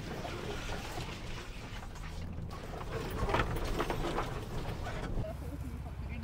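Low engine rumble and cabin noise of a 4x4 SUV crawling over a rough, overgrown dirt track, with a burst of clicks and rustles about three seconds in as the vehicle works over the rough ground.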